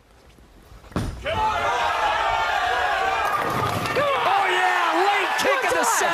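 Bowling ball crashing into the pins for a strike about a second in, followed at once by a loud, sustained crowd eruption of cheering and shouting in a packed bowling arena.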